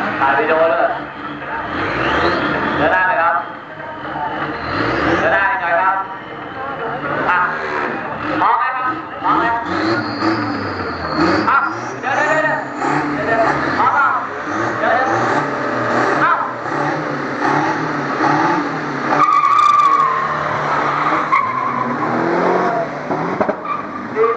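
Drag-racing pickup trucks, a Toyota Hilux Vigo and an Isuzu D-Max, revving their engines with tyre squeal from wheelspin, mixed with people talking.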